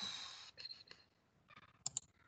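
Two quick computer mouse clicks close together near the end, the button press opening a toolbar menu.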